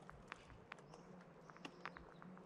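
Faint, irregular clicking from inside a fan palm's trunk: palm weevil grubs chewing, the sign that the tree holds grubs.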